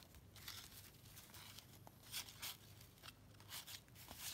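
Faint papery swishes of 1990 Fleer basketball cards sliding over one another as a stack is flipped through by hand, a handful of brief soft strokes.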